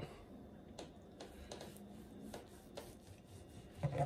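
Knife slicing through smoked brisket on a cutting board: faint sawing strokes with a few light taps of the blade on the board.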